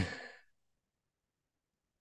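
A man's laugh trailing off into a breathy sigh in the first half second, then near silence.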